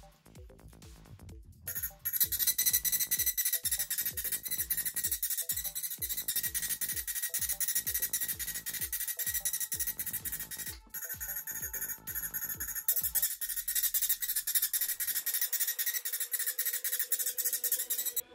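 Electronic background music with a steady beat. From about two seconds in, a handheld Tesla coil's spark discharge gives a loud, high-pitched hissing buzz. The buzz cuts out briefly near the middle and carries on alone after the beat drops out near the end.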